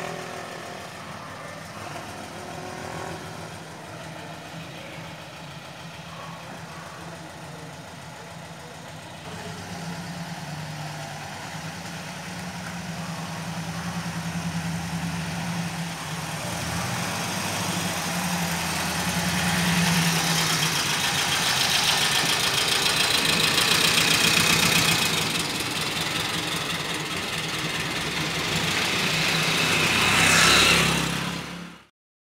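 An old car's engine running as the car drives up toward the listener: it grows steadily louder for about fifteen seconds, eases off, and rises again near the end.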